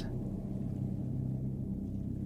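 A low, steady ambient drone, the background bed running under the narration, with nothing else on top of it.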